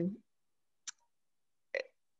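Two short clicks, one about a second in and one near the end, over otherwise silent, noise-gated video-call audio. The tail of a spoken word ends just at the start.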